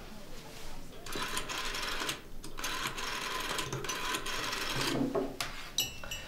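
Old black rotary desk telephone's bell ringing in two bursts of rapid ringing, a short one and then one about twice as long, with a brief ring near the end.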